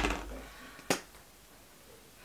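A soft low bump, then a single sharp click about a second in, from a plastic lipstick-style retinol stick tube being set down and handled.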